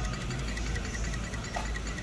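Steady background hum of a large shop, with no distinct event.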